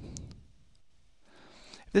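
A brief computer mouse click just after the start, opening an icon, followed by quiet room tone.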